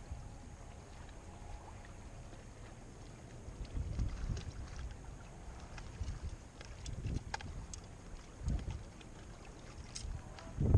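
Wind buffeting the microphone in gusts, about three of them, over a steady wash of sea water against breakwater rocks, with a scattering of light clicks in the middle.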